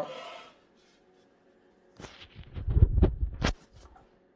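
Handling noise on the filming phone: a hand rubbing and knocking against it as it is moved, a cluster of scrapes and dull bumps starting about two seconds in and lasting about a second and a half.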